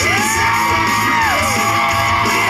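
Rock song with electric guitar: a singer's voice slides up into a long held note, then falls away about a second and a half in.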